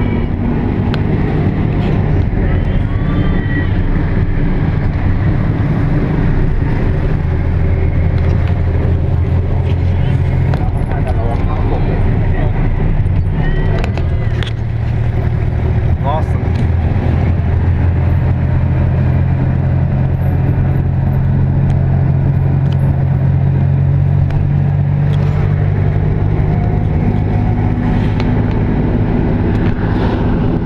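Tuk-tuk engine running steadily while under way, its note dipping briefly about halfway through and then holding steady.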